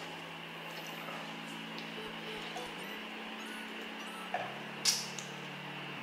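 Quiet background music of sustained low notes that change pitch every second or two. Near the end there are a couple of light clicks of a metal fork on a ceramic plate.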